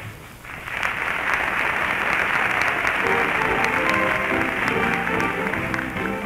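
Studio audience applauding after a musical number ends, with the orchestra playing softly underneath. The recording is narrow and tops out around 4 kHz.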